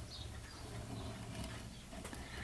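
Faint scratching of a medium sanding stick rubbed across a small injection-moulded plastic part held in a pin vise, smoothing down a sprue attachment point.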